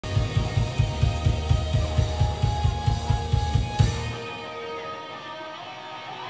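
Rock band playing live: a fast, heavy kick-drum and bass pulse under distorted electric guitars, ending on a final hit about four seconds in. After the hit the guitars ring on and fade.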